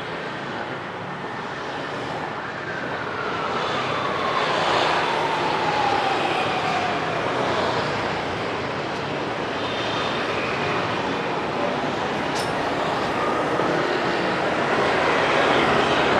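Traffic on a busy city street, motor scooters and cars passing steadily. A few seconds in, one passing vehicle's whine falls slowly in pitch as it goes by.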